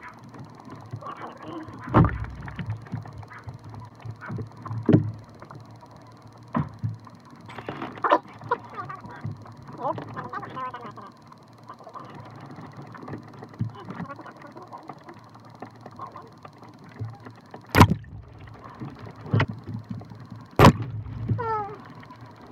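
Water balloons dropped onto a camera sitting in water among other balloons: a string of sharp knocks and splashes a few seconds apart, the two loudest near the end.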